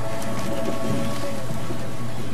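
A congregation sitting down in pews, a steady rustling and shuffling. The last held chord of the band fades out under it in the first second.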